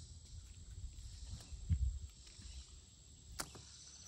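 Handfuls of wet clay scooped out by hand and dropped onto a wooden board, with one soft thud about halfway through, over a steady high hum of insects. A single sharp click comes near the end.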